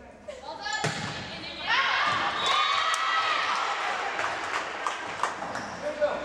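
A volleyball struck with a sharp smack about a second in, then further ball hits during the rally under voices shouting and cheering from about two seconds on.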